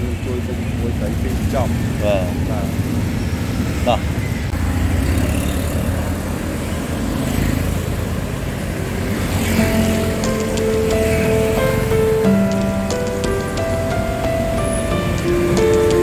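Steady road-traffic rumble with a few brief voice sounds. Background music with held notes comes in a little past halfway and carries on.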